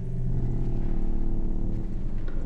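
A low, steady electronic drone of several layered tones, part of the piece's sound-design soundtrack.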